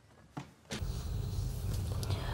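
Near silence with a single short click, then from under a second in a steady low hum and faint hiss of studio room tone.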